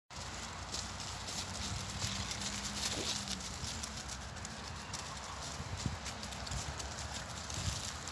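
Dogs' paws stepping over grass and dry fallen leaves, with light rustling and crackling against a steady outdoor background noise.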